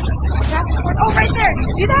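People's voices talking and exclaiming over a steady low rumble.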